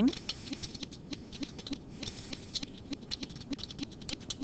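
Typing on a computer keyboard: a run of light, quick key clicks, several a second, irregularly spaced.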